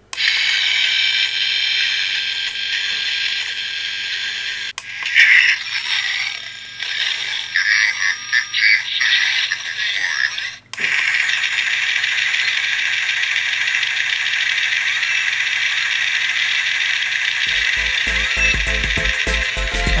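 Mechanical robot sound effects for the ED-209 figure's staged fight with the Robocop figure: a steady, hissy machine whirr with irregular clattering and clicking from about 5 to 10 s. A cut about 11 s in is followed by the steady whirr again. Music with a low beat comes in near the end.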